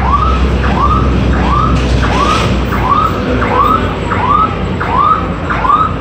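An electronic alarm gives a short rising-and-falling chirp, repeated evenly about one and a half times a second.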